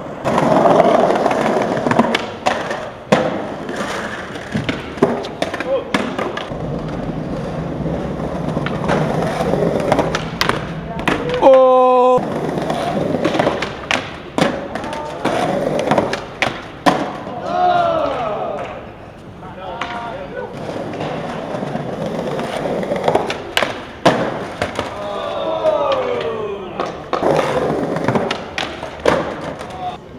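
Skateboard rolling on smooth stone and concrete, with repeated sharp pops, clacks and landings of the board as tricks are tried on a ledge.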